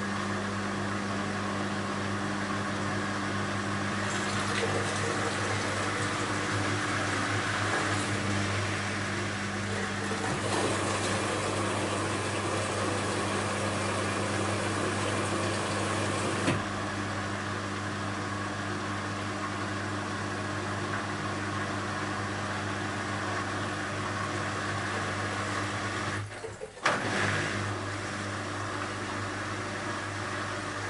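BEKO WMY 71483 LMB2 front-loading washing machine tumbling laundry in water: the inverter drive motor hums steadily under the water sloshing in the drum. There is a knock about halfway through, and a short break then another knock near the end as the drum stops and turns again.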